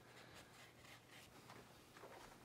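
Near silence: quiet room tone with a few faint, soft scrapes.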